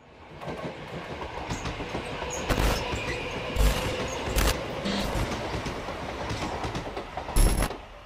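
A steady rushing, rumbling noise that swells in over the first second and holds, struck by several heavy thuds, the last and loudest near the end.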